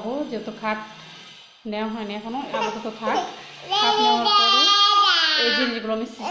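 A toddler babbling and vocalizing without words, in short phrases, then a long, loud high-pitched squeal in the second half that slides down in pitch at its end.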